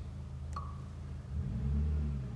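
A short light click about half a second in as a finger taps the glass-like touch control panel of a Yamaha Clavinova CLP-775 digital piano, over a steady low hum. A low rumble swells up near the end and then fades.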